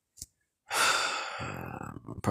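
A man's long sigh, loud at its start a little under a second in and trailing off over about a second, with a faint voice in it. A short click comes just before.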